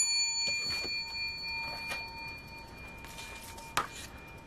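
A coin rings after being struck or set down: a clear metallic tone with several pitches that fades over about four seconds. A faint click comes near the end.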